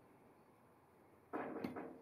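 A short metallic scrape and clunk about a second and a half in, with a sharp click in the middle and a little ringing, as a bicycle bottom bracket cartridge is pushed into a steel bottom bracket shell. The rest is faint room tone.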